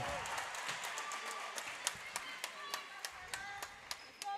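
Gym crowd clapping and applauding a made free throw, loudest at first and thinning to scattered individual claps, with a few voices calling out.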